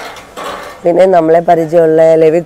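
A brief lull with faint light clinks, then a person's voice starting about a second in and running on.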